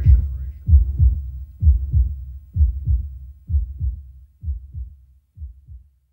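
Closing beat of an electronic dance track: low drum thumps in pairs, like a heartbeat, about one pair a second, growing fainter until they stop near the end.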